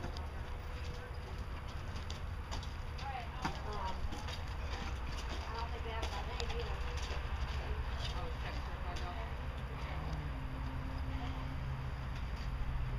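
Hoofbeats of a horse cantering on a sand arena, scattered soft thuds over a steady low rumble. Faint voices murmur in the first few seconds.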